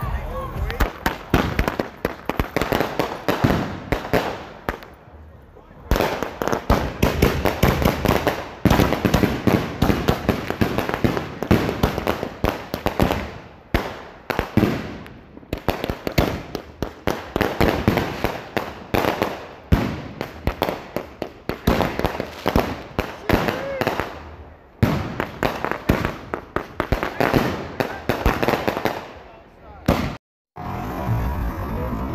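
Consumer firework cake (a multi-shot box of mortar tubes) firing: rapid volleys of launches and bursts, one after another, with brief lulls about five seconds in, near the middle and again later on.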